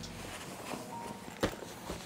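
Quiet handling noise from a padded fabric camera-bag insert as it is gripped and lifted out of the bag, with a single sharp knock about one and a half seconds in.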